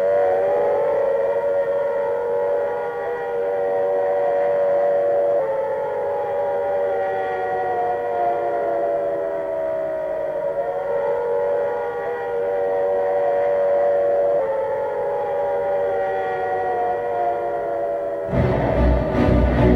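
Air-raid siren wailing: its pitch rises quickly, then falls slowly over several seconds, starting again every few seconds over a steady drone.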